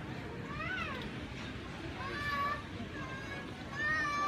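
High-pitched whining, cat-like vocal cries: a short rising-and-falling wail about half a second in, then longer held, slightly wavering cries around two seconds and near the end, over steady shop background noise.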